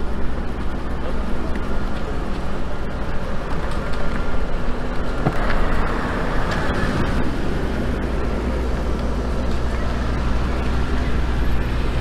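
A black Mercedes-Benz S-Class V12 sedan and the cars of its convoy drive off, over a steady low rumble. The sedan passes close about five to seven seconds in, and the sound swells there.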